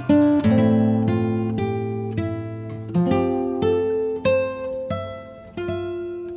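Background music: an acoustic guitar plucking a slow melody of single notes and chords, each note ringing and fading before the next.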